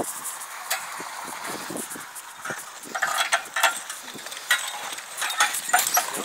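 A team of Haflinger draft horses pulling a heavy sled over bare dirt: irregular scraping, clinking of harness and trace chains, and scuffing steps, with clusters of clinks a few seconds in and again near the end.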